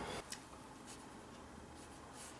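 Faint paintbrush strokes on watercolour paper that stop shortly after the start, followed by a single light tap.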